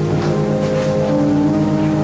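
Slow keyboard music of long-held chords, the notes changing unhurriedly, with a low note wavering steadily underneath.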